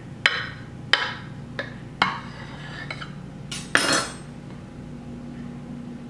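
Kitchen knife slicing through a pound cake on a plate: about four sharp knocks of the blade against the plate, several followed by a brief rasp of the knife sawing through the cake.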